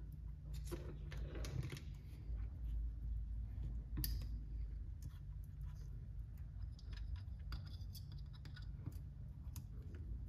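Light, irregular clicks and scrapes of small metal hardware being handled: a screw, steering link and hex driver worked at an RC crawler's front knuckle, with one sharper click about four seconds in, over a low steady hum.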